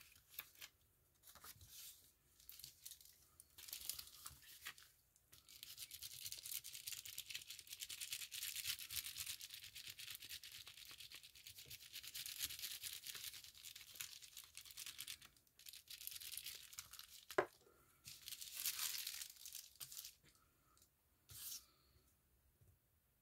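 Purple glue stick rubbed back and forth over the back of a paper card lying on a plastic bubble mailer: a dry, scratchy swishing in short strokes at first, then a long steady spell of rubbing. Near the end there is a single sharp click, followed by more rubbing.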